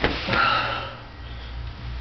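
A knock as a man's body hits the cardboard-covered floor, then one heavy breath through the nose, about half a second long: a man out of breath after a failed hand glide attempt.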